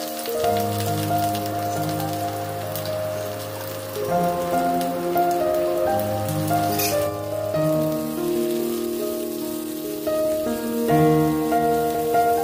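Shallots, green chillies and curry leaves sizzling and crackling in hot oil in a steel kadai, with a brief louder burst of crackle about seven seconds in. Background music of slow, held notes plays over the frying.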